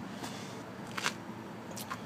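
Faint rustling and a few soft clicks from a handheld camera being moved, over a low steady hum.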